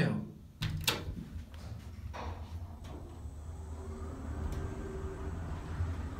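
Traction elevator starting a one-floor ride up: the car doors close with a thump about half a second in, then the car travels with a steady low rumble and a faint motor whine that rises in pitch and levels off midway.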